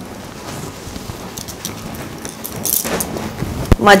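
Rustling of heavy silk saree fabric (dupion Benarasi brocade) being gathered and lifted by hand. The rustling comes in stronger handfuls in the second half, with a short knock just before a woman's voice begins.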